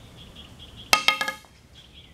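Steel gas filler tube from a 1935 Ford struck once about a second in: a sharp clank with a short metallic ring, as a pointed wooden rod is used to pound a dent out of the tube.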